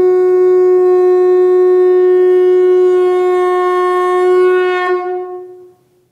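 Conch shell (shankha) blown in one long, steady note that wavers slightly and then fades out near the end.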